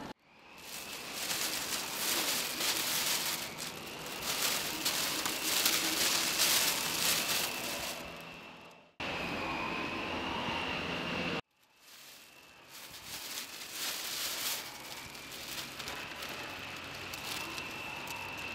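Steady outdoor rushing noise, broken by abrupt edits, with a faint steady high whine running through most of it.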